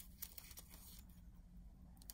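Near silence: room tone with a faint low hum and a small tick about a quarter second in.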